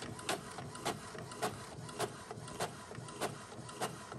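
Epson EcoTank ET-2760 inkjet printer printing a page: a steady mechanical running sound with repeated sharp clicks, about three a second.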